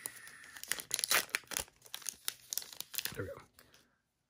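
Plastic trading-card pack wrapper crinkling and crackling as it is torn open and the cards are slid out.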